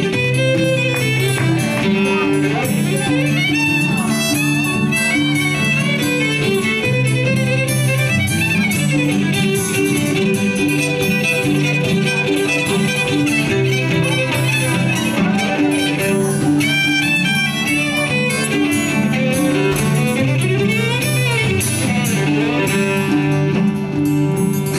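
Violin, cello and acoustic guitar playing the instrumental introduction of a slow folk song live, with sustained bowed notes and sliding violin pitches over the guitar.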